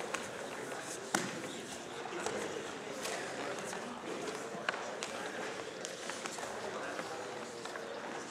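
Indistinct voices in a gym hall, with a few sharp knocks, the loudest about a second in and another just past the middle.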